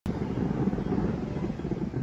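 Rapid-fire air-defence gun firing a long continuous burst of tracer rounds into the night sky: a steady, low, unbroken roar with no separate shots.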